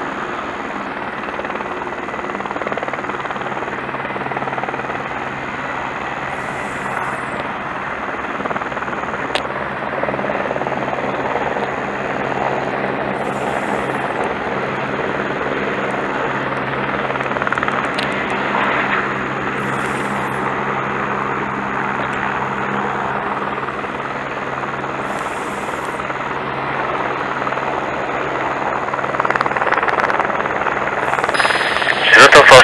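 Aerospatiale AS350B2 Ecureuil helicopter running steadily on the ground before take-off: an even turbine-and-rotor hum with a low drone under it.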